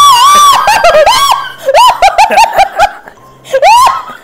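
A woman's high-pitched shrieks and squealing laughter, loud and repeated, with a quick run of short giggles in the middle and one more rising shriek near the end, the nervous squeals of someone trying to keep her balance on a skateboard.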